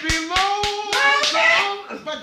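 Rhythmic hand clapping, about three claps a second, under a voice holding a long drawn-out note as the sermon breaks into song.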